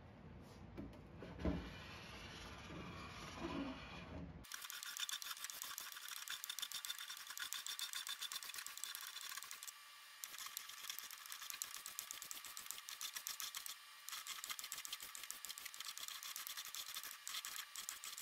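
Latex paint being scraped off a painted wooden drawer by hand, peeling away in strips. From about four seconds in there is a fast, dense run of thin, scratchy strokes. Before that there are softer, duller handling sounds.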